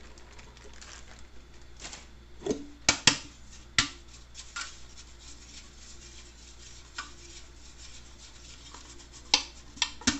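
A greased metal tube cake pan being dusted with flour and handled: scattered sharp knocks and taps of the metal pan, the loudest a quick pair about three seconds in, with a few more near the end.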